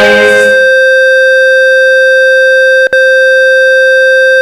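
Electronic industrial music breaks down to a single loud, steady held electronic tone, like a siren fixed at one pitch. It drops out for an instant just before the three-second mark, and a fainter lower tone joins about halfway through.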